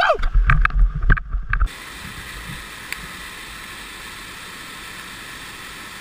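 A man's short yell, then about a second and a half of wind buffeting and knocks on a kayaker's action-camera microphone. After an abrupt cut, a steady even rush of white water from the falls.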